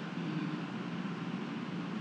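Steady, even background hum and hiss of room tone, with no distinct event.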